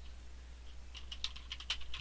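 Typing on a computer keyboard: a run of faint keystrokes, most of them in the second second, over a low steady hum.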